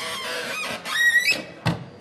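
Redwood convertible bench being pulled open into a picnic table: wood scraping as it slides, a rising squeak about a second in, then a single knock near the end.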